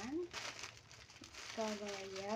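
Clear plastic packaging crinkling as a bagged T-shirt is handled and turned over, with a short wordless voice sound, like a hum, near the end.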